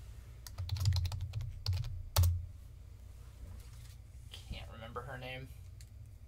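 A short burst of typing on a computer keyboard, a run of quick clicks that ends in a heavy thump about two seconds in. A faint murmur of a voice follows near the end.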